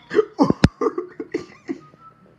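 A person laughing in a string of short bursts, with one sharp click about half a second in.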